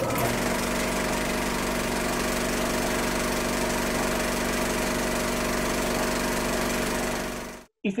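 Film projector running, a sound effect under the show's bumper: a steady mechanical whirr and clatter that cuts off abruptly near the end.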